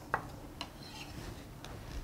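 Chef's knife on a wooden cutting board: a few light taps as the last of a chopped poblano pepper is cut, the clearest just after the start and fainter ones after it.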